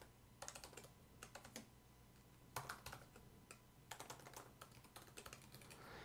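Faint computer-keyboard typing: short runs of quick keystroke clicks separated by pauses of about a second.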